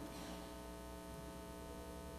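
Faint, steady electrical mains hum with a string of evenly spaced overtones, from the sound system or recording chain.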